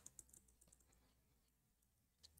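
Near silence, with a few faint computer-keyboard key clicks in the first half second or so.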